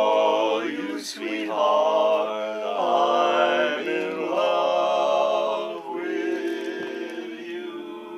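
Barbershop quartet of men singing a cappella in close four-part harmony, holding and changing chords, softer from about six seconds in.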